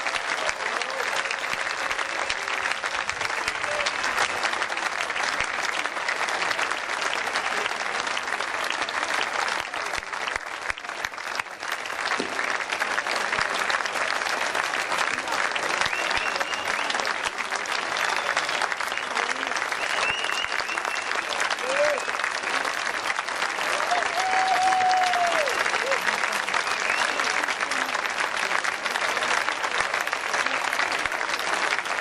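A large audience applauding steadily in a long ovation, with a brief lull about a third of the way through. A few voices call out over the clapping in the second half.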